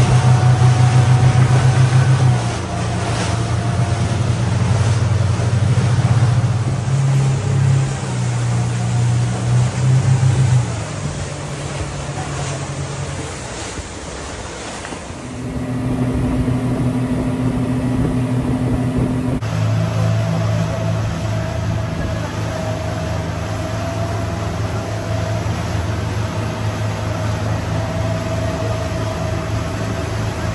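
Motorboat engine running under way, with water rushing along the hull and wind. Its hum shifts in level several times in the first half, then runs steadily in the last third.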